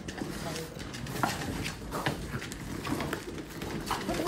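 French bulldogs scrabbling and tearing at a cardboard box on a hardwood floor: a scatter of irregular clicks and taps from claws on the wood and the cardboard.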